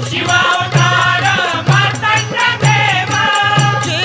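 Marathi devotional song to Khandoba, a group of voices singing together over a steady folk drum beat of about three strokes every two seconds.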